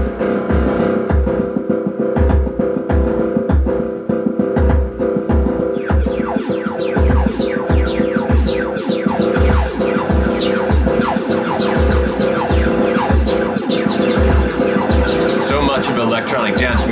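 Korg Electribe EMX playing an electronic pattern: a sustained synth chord over a steady kick-drum beat. From about five seconds in, rapid falling zaps and hi-hat ticks join in.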